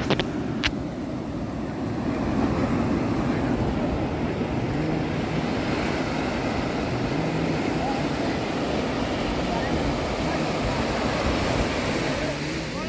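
Ocean surf breaking and washing up a sandy shore, a steady rushing noise, with wind rumbling on the phone's microphone. Faint voices come through now and then, and there are a few sharp clicks right at the start.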